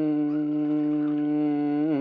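A singer holding one long, steady note of a Dao pà dung folk song, the pitch bending down as the note ends near the end.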